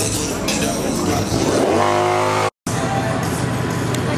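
Car engine revving up quickly and holding at high revs, cut off suddenly about two and a half seconds in, followed by an engine running steadily at a lower note. Music and voices sound underneath.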